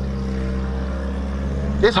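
A car driving past on the street, a steady low rumble of engine and tyres that ends as speech resumes near the end.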